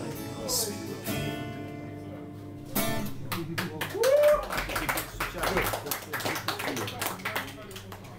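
An acoustic guitar's last chord rings out and fades. From about three seconds in, a small audience claps, with voices over the applause.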